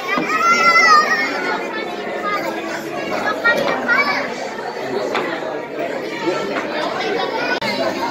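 Young children's voices and the chatter of a crowd in a large hall. A high child's call rises above the babble in the first second.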